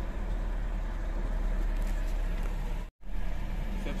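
Mitsubishi Adventure's gasoline engine fast-idling steadily at about 1,300 rpm while still cold, heard from inside the cabin. The sound cuts out for a moment about three seconds in.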